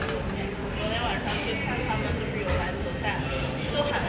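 Indistinct chatter of other diners around a restaurant dining room, a steady murmur of voices with no one speaking close by.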